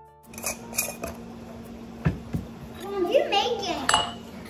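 A few sharp clicks and clinks of glass canning jars and their metal screw lids being handled on a tray. A high voice comes in near the end.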